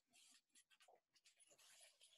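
Near silence, with faint, irregular scuffs and rustles of noise.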